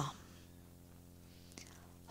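The last syllable of a spoken word trailing off, then a pause of near silence: room tone with a faint steady low hum, broken by one soft click about a second and a half in.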